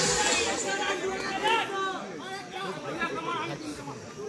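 Several voices talking and calling over one another: the chatter of players and spectators around the ground, with no single clear speaker.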